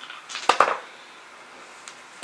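Six-sided dice rolled onto a table: two sharp clatters close together about half a second in, then a faint click near the end.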